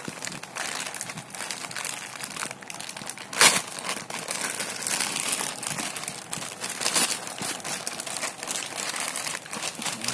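White plastic courier mailer bag crinkling and rustling as hands handle it. There is a sharp, louder crackle about three and a half seconds in and another near seven seconds.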